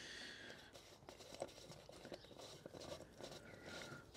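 Near silence, with a few faint light clicks from a small aluminium tin being handled as its lid is worked open; the clearest tick comes about a second and a half in.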